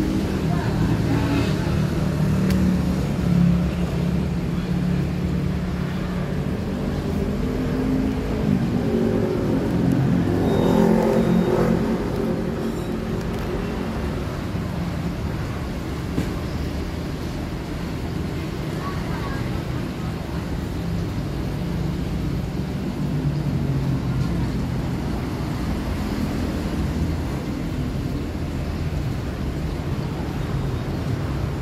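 Road traffic on the street running steadily, with one vehicle passing louder, its engine pitch rising and falling, about ten seconds in.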